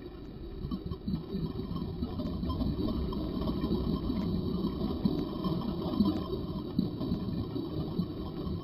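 Scuba regulator exhaust bubbles heard underwater: a muffled, low gurgling rumble of exhaled air that grows louder over the first few seconds and then holds.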